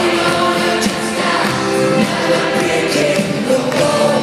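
Live rock band playing with group vocals, heard from far back in a concert hall.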